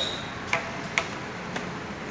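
Three sharp mechanical clicks about half a second apart over a low steady hiss, from a uPVC window-profile welding machine.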